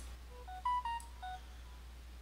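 A short run of faint electronic beeps: about seven clean tones at shifting pitches over a little more than a second, like a device's notification jingle, over a steady low electrical hum.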